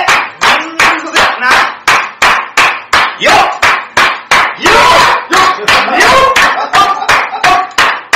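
Men chanting a rhythmic host-club drinking call over steady hand claps, about three claps a second, while one of them drinks.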